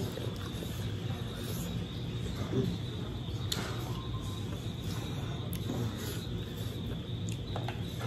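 Two people chewing food, faint, with a few soft clicks, over a steady low hum.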